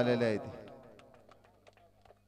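The end of a man's commentary call in Marathi, "four runs", fading out within the first half second, followed by faint scattered clicks over a low steady hum.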